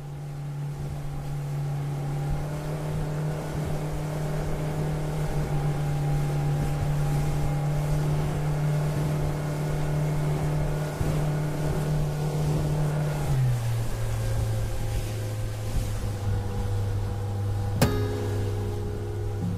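Motorboat engine running steadily, fading in over the first couple of seconds; its pitch drops abruptly about thirteen seconds in. An acoustic guitar strum comes in right at the end.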